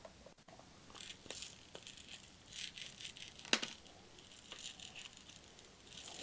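Light rattling and scattered small clicks as a spectacle repair kit of tiny screws, nose pads and tweezers is handled, with one sharper click about three and a half seconds in.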